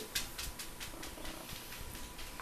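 A rabbit being handled and shifted in a person's arms: fur and cloth rustling, with a string of soft quick clicks, several a second.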